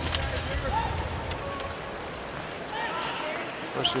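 Ice-hockey arena ambience: a steady crowd murmur with faint voices and a few sharp clacks of sticks and puck on the ice during a faceoff and the play after it.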